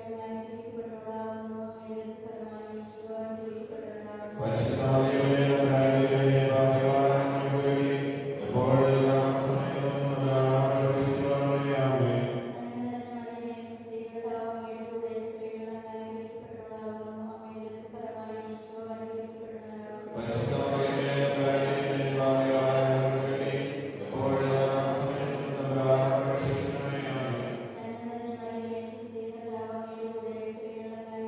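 Slow chanting by voices on long held notes. It swells twice, about four seconds in and again about twenty seconds in, when fuller, lower voices join and then drop away.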